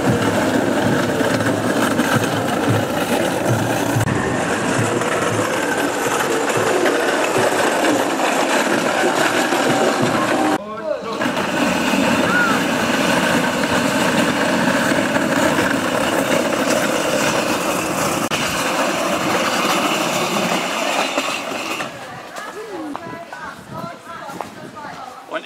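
A song with vocals playing loudly from the rehearsal loudspeaker as the take runs. There is a sudden break about eleven seconds in, and it gets quieter near the end.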